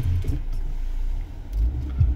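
Low rumble of a Suzuki Swift's 1.3 petrol engine and road noise heard inside the cabin while driving slowly. The rumble swells louder about three-quarters of the way in.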